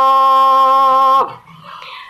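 A woman singing a Tày phong sư folk song unaccompanied, holding one long, steady note that dips slightly and ends about a second in. It is followed by a much quieter pause.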